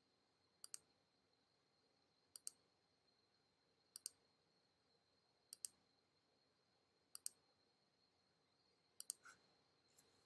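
Six computer mouse clicks, each a quick press-and-release pair, coming about every one and a half seconds. Each click places a node on an outline being traced in design software.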